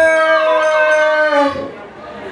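A long, howl-like note held at one steady pitch through the PA. It slides down slightly and cuts off about one and a half seconds in.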